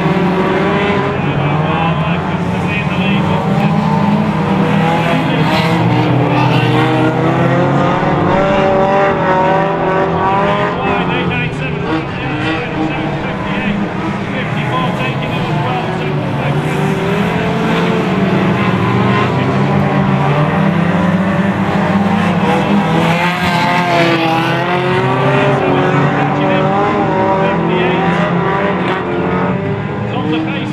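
Several hot rod race cars' engines running hard around a shale oval, their pitch rising and falling as they lap.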